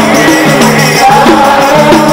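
Qaswida sung by men's voices through microphones, a held, gliding melody over a repeating low, stepped accompaniment.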